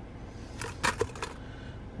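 Hard clear plastic lure packaging being handled and set down: a short cluster of sharp clicks and taps between about half a second and a second and a half in.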